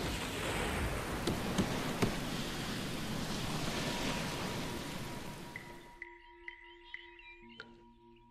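Sound effect of heavy rain: a steady hiss of downpour with a few sharp cracks, fading and stopping at about six seconds. Faint, evenly spaced high chirps and steady low tones follow.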